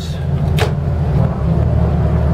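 Twin inboard engines of a Carver 41 motor yacht idling with a steady low drone, the starboard engine just shifted into reverse. A brief sharp sound comes about half a second in.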